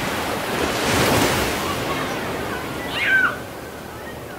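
Ocean waves surging against the shore: a wash of surf that swells to a peak about a second in and then ebbs. A short high call, falling at its end, sounds about three seconds in.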